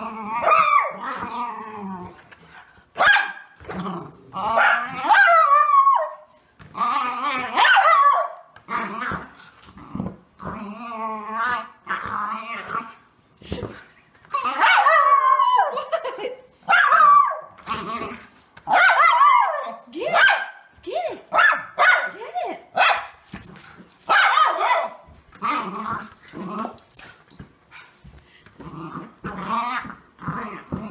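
Miniature schnauzer growling and barking in play over a ball, in many short vocal bursts that bend up and down in pitch, with brief pauses between them.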